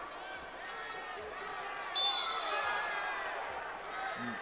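Basketball arena crowd noise with shoes squeaking and a ball bouncing on the court. About halfway through, a referee's whistle blows shrilly for a foul, fading out over about a second.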